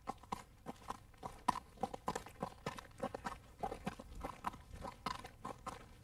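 A horse's hooves clip-clopping at a walk, a string of sharp, uneven steps, with a person's footsteps walking alongside.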